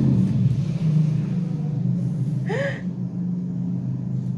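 A steady low hum runs throughout. About two and a half seconds in, a short voice sound rises and falls in pitch, typical of a gasp.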